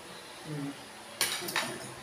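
A knife clinking against a plate twice, a little over a second in and again shortly after, with a brief soft hum of a voice before.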